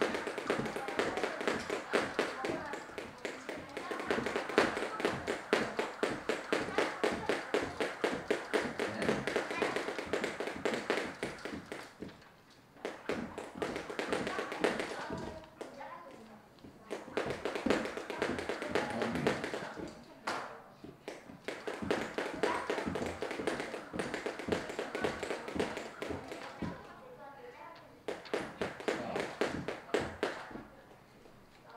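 Two jump ropes slapping the floor in a fast, dense stream of ticks as two children do speed double-unders. The ticking breaks off briefly several times when a jumper misses and restarts.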